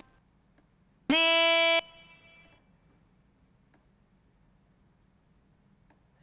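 A single sung vocal note, played back on its own from a vocal-tuning editor as a note is selected. It lasts under a second, scoops up quickly and then holds one steady pitch, followed by a short fading echo. A faint mouse click comes at the very start.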